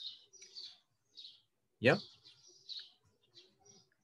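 Birds chirping in short high calls, one every half second or so, with a man's brief spoken 'yeah?' about two seconds in as the loudest sound.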